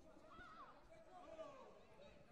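Faint voices carrying in a large hall, with one high voice calling out, rising then falling, about half a second in.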